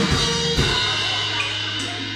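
Band music with drums at the close of a song: drum hits stop about half a second in, then a final chord is held and slowly fades.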